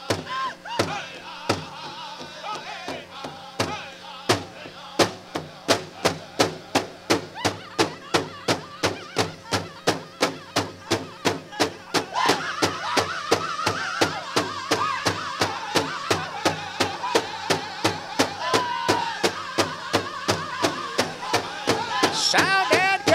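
Powwow drum group playing an intertribal song: the big drum is struck in a steady beat of about three strokes a second. The singers join in about twelve seconds in.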